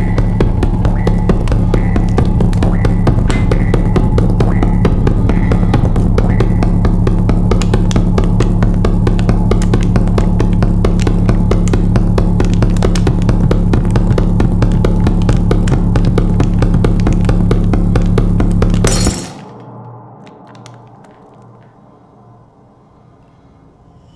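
Loud music with a dense drum beat and heavy bass notes, which stops suddenly about nineteen seconds in, leaving only a faint low hum.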